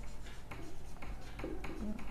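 Marker pen writing on a whiteboard: a string of short, light strokes of the tip on the board.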